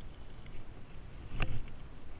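Handling of a spinning rod and reel, with one sharp knock about a second and a half in over low rumbling noise.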